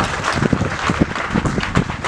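A group clapping: a dense, irregular patter of claps.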